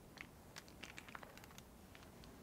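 Faint, scattered light clicks and taps, about half a dozen, from craft supplies being handled on a tabletop, with plastic paint pens and their packaging the likely source.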